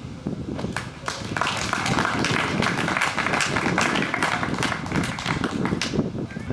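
A small crowd clapping: scattered claps at first, building within a second or two into steady applause.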